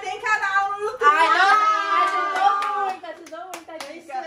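Excited, drawn-out voices, then a quick run of about five or six hand claps in the last second.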